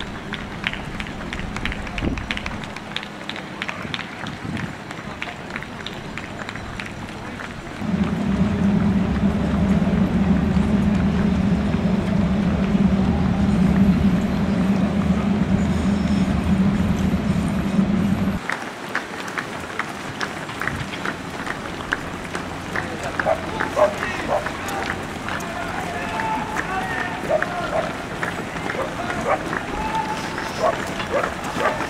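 Many runners' footsteps pattering on asphalt, interrupted for about ten seconds by a loud, steady low drone from a train crossing a steel truss railway bridge, which stops abruptly. After it the footsteps return with some voices.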